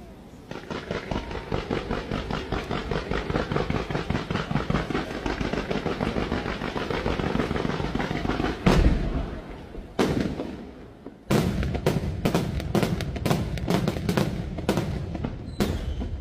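Aerial fireworks display: about eight seconds of dense, rapid popping from crackling stars, then a heavy boom and a second loud report, then a fast run of sharp shell bursts, several a second, near the end.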